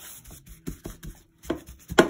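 A hand rubbing ground cumin and garlic into raw salmon fillets: soft, wet rubbing with a few light taps, then a couple of sharper slaps near the end.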